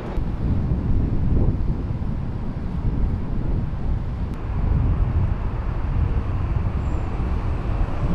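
Outdoor city street ambience: a steady low rumble of traffic.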